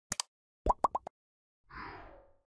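Animated like-and-subscribe button sound effects: a quick double mouse click near the start, three short rising pops a little before halfway, then a brief swish near the end.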